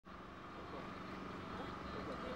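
Faint outdoor ambience: distant murmuring voices over a steady hum and low rumble.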